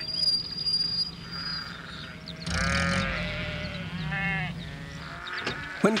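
Sheep bleating three times in wavering calls, with a thin steady high tone in the first two seconds and a low steady hum underneath.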